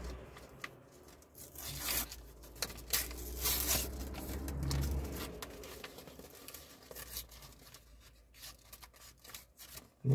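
A paper envelope being torn open, with paper crinkling: two louder spells of tearing about two and three to four seconds in, then quieter rustling.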